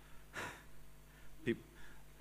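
A man's short, sharp in-breath, picked up close by a headset microphone, then a single spoken word about a second later.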